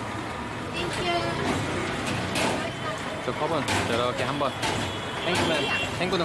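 People talking at a street stall over steady city traffic noise, with a few sharp clicks.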